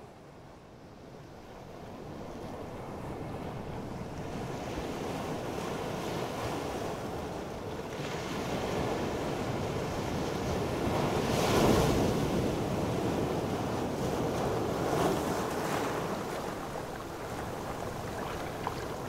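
Field recording of ocean surf in an electronic composition: a wash of breaking waves that swells gradually, with its loudest surge about two-thirds of the way through and a smaller one shortly after.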